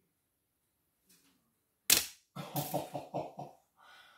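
A small, ultralight 3D-printed glider strikes the camera: one sharp click about two seconds in, the loudest sound here. A man then laughs in short, quick bursts.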